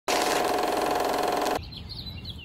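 Film projector sound effect: a rapid mechanical clatter with a steady tone, cutting off suddenly about one and a half seconds in. Faint birdsong follows.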